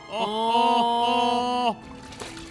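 A man singing one long, steady note of a do-re-mi solfège scale exercise, held for about a second and a half and then cut off abruptly.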